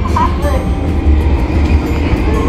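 Train-carriage running sound played over loudspeakers in a railway-carriage exhibit: a steady low rumble, with faint voices in the first half-second.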